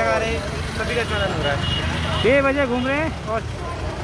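A man talking, with pauses, over a steady low rumble.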